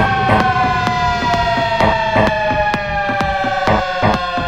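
Electro house music: a long, siren-like synth tone that slowly falls in pitch, over a steady dance beat of about two hits a second.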